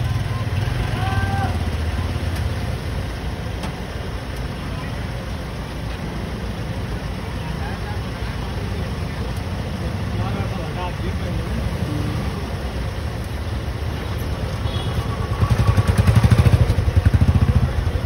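A motor vehicle engine running with a steady low rumble. It grows louder for about two seconds near the end.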